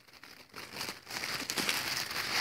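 Close rustling and crinkling of material being handled, louder from about a second in.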